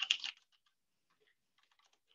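Typing on a computer keyboard: a quick run of key clicks in the first half-second, then only a few faint taps.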